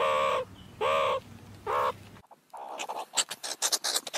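Three short animal calls about a second apart, each under half a second and rising then falling in pitch, followed by faint scattered clicks.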